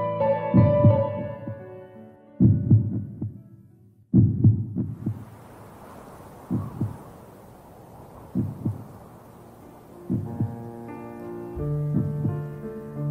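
A heartbeat sound effect in a music soundtrack: paired low thumps repeating about every two seconds. Piano chords fade out at the start, a soft hiss comes in about five seconds in, and music tones return near the end.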